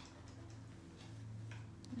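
A few faint, irregular ticks of a coloured pencil tapping and dabbing on a paper tile as white is worked onto it, over a low steady hum.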